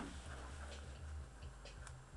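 Faint scattered clicks over a low hum.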